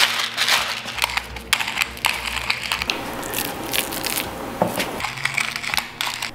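Hand pepper mill grinding black peppercorns, a gritty crunching in a run of short, irregular twists.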